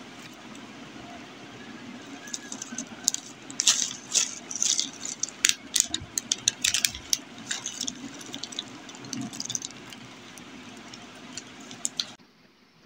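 Kurkure snack pieces poured from a crinkly plastic snack packet into a bowl: the packet crackles and the crunchy pieces rattle and patter as they drop, busiest in the middle and thinning out near the end.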